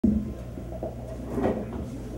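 Knocks and bumps from a handheld microphone being handled: a sharp knock right at the start and another bump about a second and a half in, over a steady low electrical hum from the sound system.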